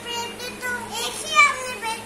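A young child's voice, talking or vocalising in short high-pitched phrases with no clear words.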